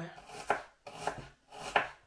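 Kitchen knife slicing an onion thinly on a wooden cutting board, each stroke ending in a knock on the board. There are about three cuts at an uneven pace.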